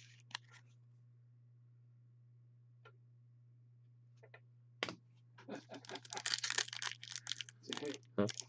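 Trading-card pack wrapper crinkling and tearing as it is opened by hand: a few faint clicks, then from about five seconds in a dense run of sharp crackles.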